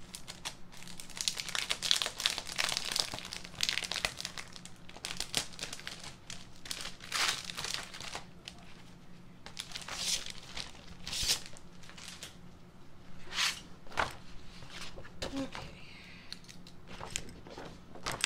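Packaging crinkling and rustling in irregular bursts as a new, unopened stencil sheet is handled and pulled from its paper sleeve.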